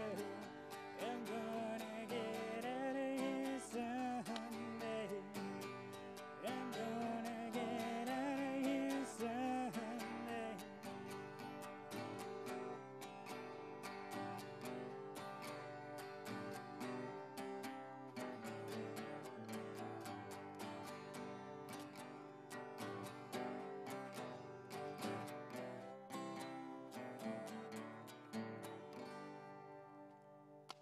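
Two acoustic guitars strummed together in a country song, with a wavering melody line above them over the first ten seconds. The playing gets gradually quieter and ends near the end.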